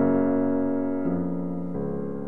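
Background piano music: slow, held notes, moving to new chords about a second in and again near the end.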